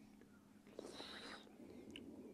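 Near silence, broken about a second in by a brief faint whisper.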